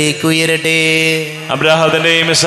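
A man's voice chanting a line of the Syro-Malabar Qurbana liturgy into a microphone. He holds one long, steady note, then starts a new phrase just after halfway.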